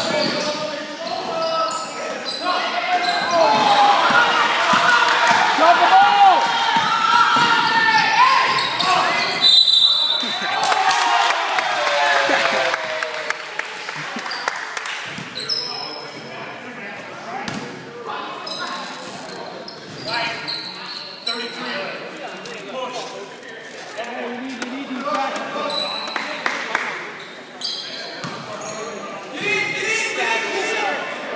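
Basketball game sounds in an echoing gym: the ball bouncing on the hardwood, short squeaks of sneakers, and shouting voices of players and spectators, busiest in the first half and quieter after about the middle.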